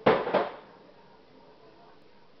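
Two sharp knocks in quick succession right at the start, about a third of a second apart.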